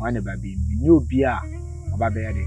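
A man's voice talking over background music with a low, droning bass that shifts pitch a couple of times.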